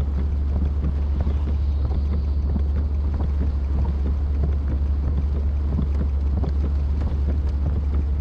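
Heavy rain pattering on a car's windshield and roof, heard from inside the cabin as many scattered ticks over a steady low rumble.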